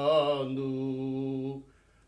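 Unaccompanied male choir singing cante alentejano, holding the last note of a verse line in unison. The note steps down about half a second in and is held until it stops about a second and a half in.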